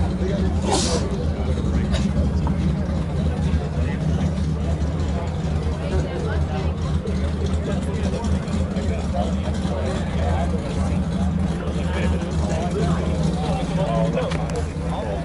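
Car engine idling steadily, with a short hiss about a second in and people talking in the background.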